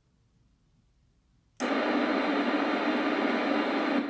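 Homemade regenerative airband receiver, silent at first, then about a second and a half in its speaker suddenly opens into a loud, steady hiss. This is the squelch opening as an air traffic control transmission comes on the air, just before the voice is heard.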